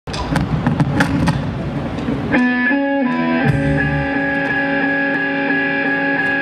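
Live blues band playing on amplified electric guitars and a drum kit: a few drum hits over a rough, noisy start, then about two seconds in, sustained electric guitar notes ring out and step to new pitches a few times.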